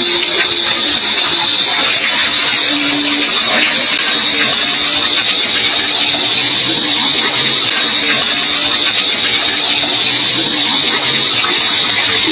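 Water pouring in thin streams into the basin of a bamboo wishing well, a steady splashing rush with no breaks.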